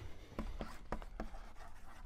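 Chalk writing on a blackboard: several short taps and scratches as letters are written, bunched in the first half.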